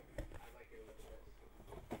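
Quiet handling noise from a cardboard shipping box and its contents as items are taken out, with a light knock just after the start and another near the end. Faint muttering runs alongside.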